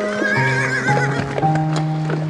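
A horse neighs once, a quavering call lasting about a second, along with the hoofbeats of galloping horses, over background music with held notes.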